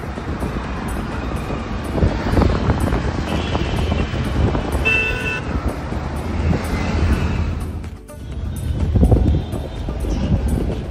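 Road and traffic noise inside a moving car, a steady low rumble, with a short vehicle horn toot about five seconds in.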